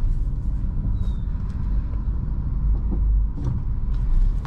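Engine of a manual Honda car heard from inside the cabin, a steady low rumble as the car creeps along at very low speed.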